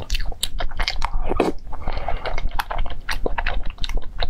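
A person chewing and biting food close to the microphone, a dense run of quick, crisp crunches and wet mouth clicks.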